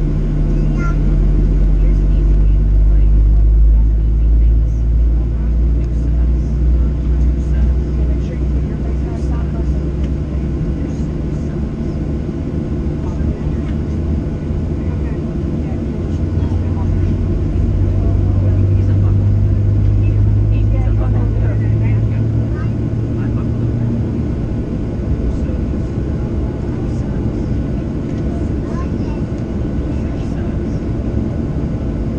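Cabin drone of a Boeing 737-700 taxiing, its CFM56-7B engines at low thrust: a steady low hum that swells a few seconds in and again around the middle.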